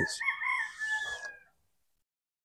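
A single drawn-out animal call, high-pitched and fairly faint, wavering briefly at first and then held steady before it fades out about a second and a half in.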